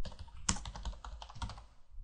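Computer keyboard being typed on: a quick, uneven run of key clicks, the loudest about half a second in.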